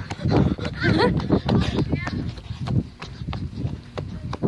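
Someone running hard with a phone in hand: quick footsteps, heavy breathing and the phone knocking and rubbing against the hand. Short high voice cries come about one and two seconds in.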